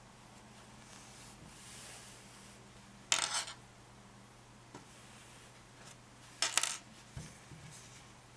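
Two short clattering rattles a few seconds apart, of a metal yarn needle being handled and laid down on a wooden tabletop, over a faint steady hum.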